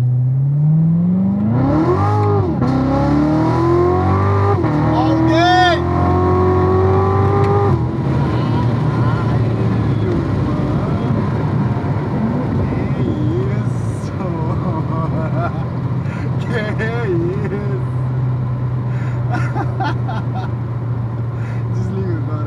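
Corvette Z06's supercharged V8 at full throttle from inside the cabin, revs climbing hard with two quick upshifts about two and five seconds in. The throttle lifts near eight seconds in and the engine settles to a steadier, lower running sound while cruising.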